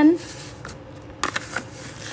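Small rhinestones rattling and sliding in a clear plastic tray as it is tilted and scooped, with a few light clicks.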